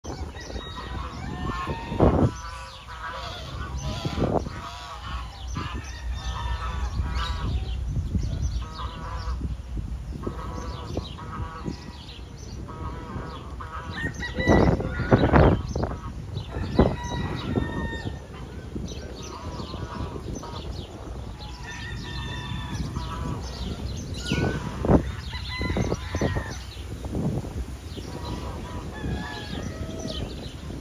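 Domestic geese honking at close range: many short calls following and overlapping one another, with several louder sudden noises about 2 s in, around 15 s and near 25 s.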